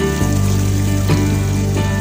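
Background music with the steady rush of a small stream running over rocks, the water noise starting with the music and staying under it.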